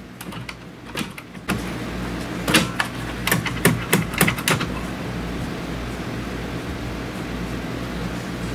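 Hand tool clicking and knocking on metal fittings at a radiator, in a cluster of sharp clicks a couple of seconds in, over a steady mechanical hum that sets in abruptly about one and a half seconds in.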